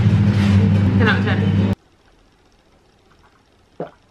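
Loud music with steady low bass notes and voices, cutting off abruptly under two seconds in. Then a quiet room, with one short vocal sound near the end as a glass of water is drunk.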